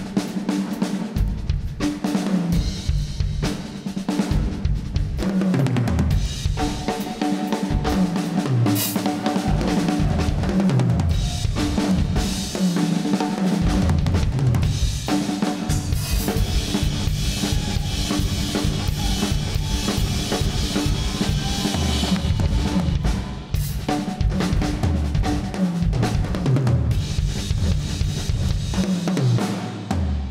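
Drum kit played busily and at length, with bass drum, snare and cymbals, under held pitched tones from the rest of a small instrumental ensemble. The cymbals are brightest through the middle stretch.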